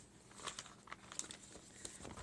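Faint rustling and crinkling of a stack of printed bead packaging bags being handled and flipped through by hand, with a few small scattered ticks.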